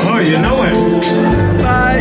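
A live funk band plays through a concert PA, heard from within the crowd. Drum hits and sustained notes are joined about halfway through by a bass line.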